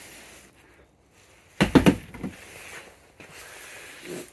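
Brief handling noise from the cardboard packaging and parts: a quick cluster of knocks and rustles about a second and a half in, with a smaller one just after, against quiet room tone.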